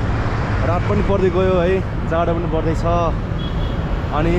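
Steady low rumble of road traffic, with a man's voice in a few short phrases in the middle.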